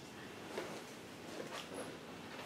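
Quiet room tone with a few faint, soft clicks.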